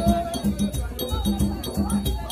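Haitian Vodou ceremonial music: drums beating a fast, even rhythm with shakers and other percussion, while a crowd of voices sings over it.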